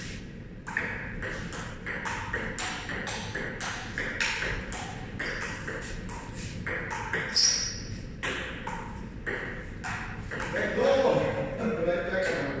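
Table tennis rally: the ball clicking off the paddles and bouncing on the Sponeta table in a quick, even run of sharp hits, two to three a second. The hits stop about ten seconds in.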